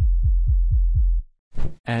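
Electronic low kick drum samples playing as a rapid build-up roll, about six deep thuds a second with nothing above the low end, used in place of a snare roll to build tension in a deep house track. The roll cuts off suddenly a little past halfway.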